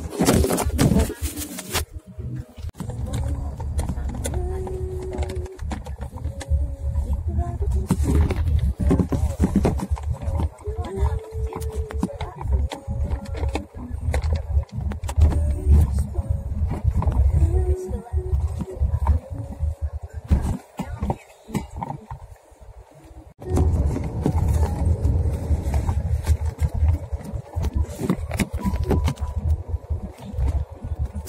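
Heavy low rumble of a car's engine and tyres heard from inside the cabin on a narrow mountain road, with short pitched sounds scattered through it and a brief lull shortly past the two-thirds mark.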